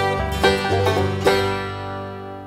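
Closing bars of a banjo-led bluegrass song: the band strikes its last few chords, and the final one, about a second and a quarter in, is left to ring and fade.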